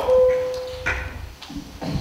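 A single steady electronic tone starts abruptly and fades away within about a second as a table conference microphone is switched on. A couple of light knocks and a low rumble follow as the microphone is handled.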